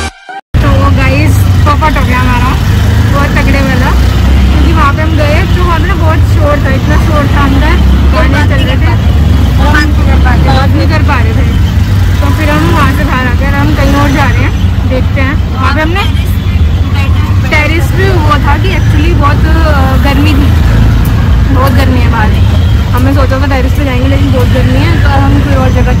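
Auto-rickshaw engine and road noise heard from inside the open cabin while riding: a loud, steady low rumble, with people talking over it.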